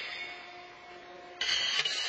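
Pitched horseshoes clanking against steel stakes, ringing and echoing in a large hall. A faint ringing tone fades through the first second, and a fresh clank comes in about one and a half seconds in.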